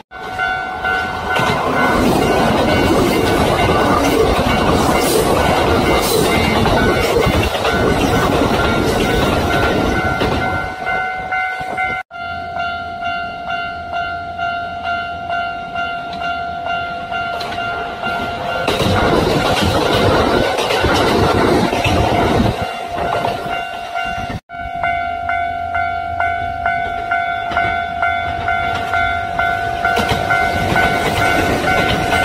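Kintetsu electric trains passing close by, wheels clattering over the rail joints, in three stretches split by abrupt cuts about 12 and 24 seconds in. The passing is loudest over the first ten seconds and again around 20 seconds in, and a steady ringing tone sits under it throughout.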